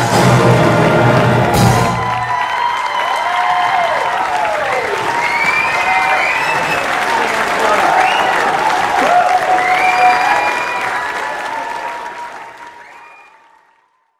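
A concert band's final chord, with brass, cut off sharply about two seconds in, then an audience applauding and cheering, fading out near the end.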